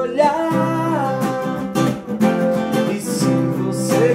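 Acoustic guitar strummed steadily, with a man singing along over it.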